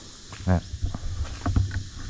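Footsteps and handling noise from a body-worn camera while walking over debris-strewn ground: irregular low bumps and small clicks. There is also one short vocal sound about half a second in.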